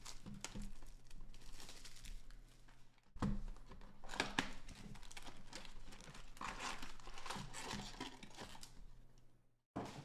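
Plastic shrink wrap crinkling and tearing as it is stripped off a Panini Mosaic football card box, followed by the rustle of the opened box and its wrapped card packs being handled. There is a sharp, loud burst of crinkling about three seconds in.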